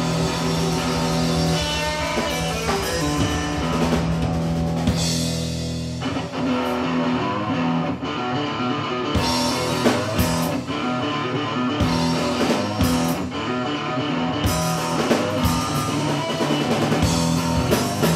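Live electric guitar and drum kit playing a blues-rock instrumental intro, with the drum hits growing more prominent about a third of the way in.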